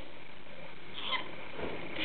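A Goldie's lorikeet gives one brief, faint high chirp about a second in, over steady room hiss.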